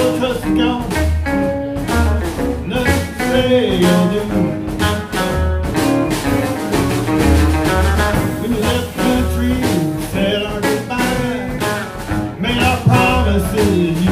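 Live blues band playing an instrumental stretch: upright double bass and drum kit keeping a steady low beat under electric guitar and a harmonica played into the vocal mic.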